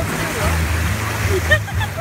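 Small waves washing in at the water's edge of a sandy beach, with faint distant voices of people in the water.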